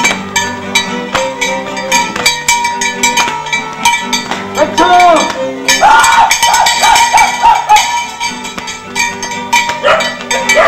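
Live music for a traditional Guerrero folk dance, with steady held notes over a regular beat of sharp clicks. Around the middle, a high wavering voice calls out over the music.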